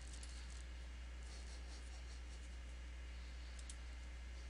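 Faint computer mouse clicks, scattered at first and then two quick clicks near the end, over a steady low hum.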